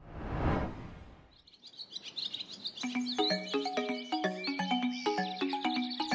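A short whooshing swell that fades within about a second, then chirping bird calls come in, joined about three seconds in by light background music of short stepping notes.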